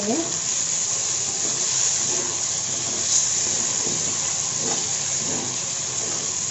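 Okra and other vegetables frying with tempering spices and curry leaves in hot oil in a steel kadai, stirred with a wooden spatula: a steady sizzling hiss.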